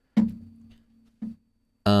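A single plucked, guitar-like note that starts sharply and fades away over about a second, followed by a brief second note.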